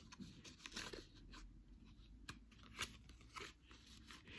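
Faint, scattered clicks and rustles of playing cards being handled and slid into a round playing-card holder.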